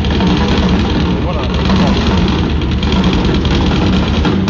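A live jazz-funk band playing loudly, heard from the audience with a heavy, rumbling low end.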